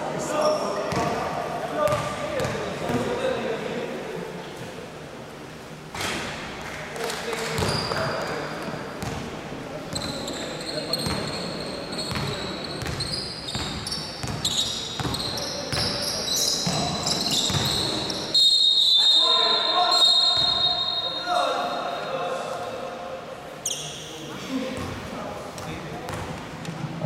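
Indoor basketball game: a ball bouncing on a hardwood court, sneakers squeaking on the floor, and players' and onlookers' voices echoing in the gym. The squeaks come mostly in the middle, while play is running.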